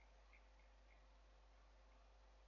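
Near silence: room tone with a few very faint clicks in the first second.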